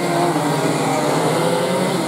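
Engines of a pack of 125cc racing karts running together at speed through a corner, a steady mix of several engine notes.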